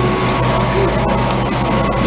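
Steady machinery drone of a mechanical room: a low hum under an even rushing noise, with a faint steady whine.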